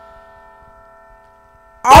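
A faint, held bell-like chord rings on alone in a break in a hip-hop beat. Near the end the full beat and rapped vocals come back in abruptly and loud.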